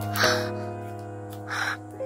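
Background piano music, with two brief rustles of paper and plastic packaging being handled: one just after the start and one near the end.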